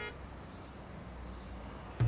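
Faint city street ambience: a low, steady traffic rumble, with a short high tone right at the start.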